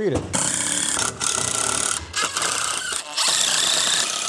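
Woodworking power tools on pressure-treated 2x4 lumber in short back-to-back stretches: a sliding miter saw and a cordless drill driving screws. The noise is loud and steady within each stretch, broken by brief gaps about once a second.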